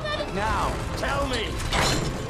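Heavy iron chains creaking and grinding under strain, with a man's strained yelling, then a sharp crack near the end as the chains break loose.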